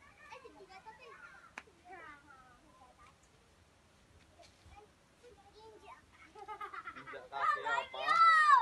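Young children's voices calling and chattering while they play, with a louder, high-pitched shout near the end.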